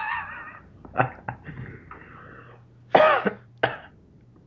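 A person coughing a few times: two short coughs about a second in, then two louder ones around three seconds in.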